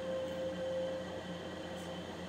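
Room tone: a steady hiss and hum, with a faint steady tone that fades out about a second in.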